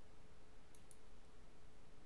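Two quick, faint computer mouse clicks close together, about three-quarters of a second in, over a low steady hum of room tone.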